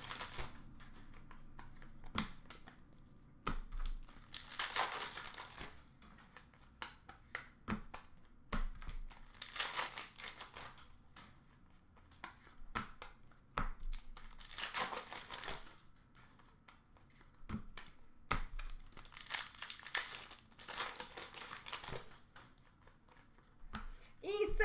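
Trading card pack wrappers tearing and crinkling as packs are opened and cards handled: several rustling bursts, each a second or two long and a few seconds apart, with light taps between them.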